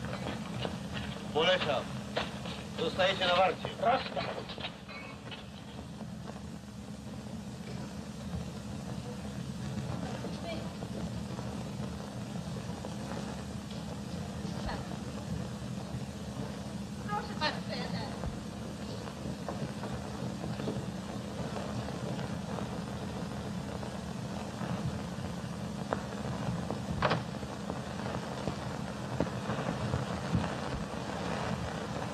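A few brief voices, exclamations or short phrases, a couple of seconds in and again about halfway through, over the steady hum and hiss of a 1930s film soundtrack; a single sharp click near the end.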